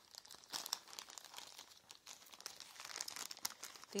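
Faint crinkling of plastic packaging being handled, a string of irregular small crackles.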